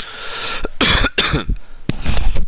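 A man coughing several times in quick succession.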